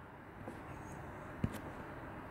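Low, steady room noise with one short click about one and a half seconds in, a stylus tapping on a tablet screen while erasing handwritten notes.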